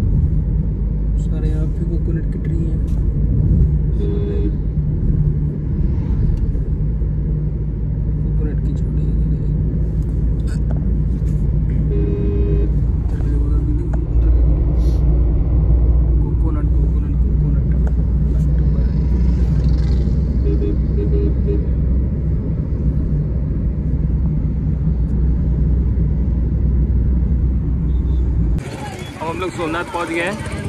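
Steady low rumble of a car driving, engine and road noise heard from inside the cabin; it cuts off abruptly near the end.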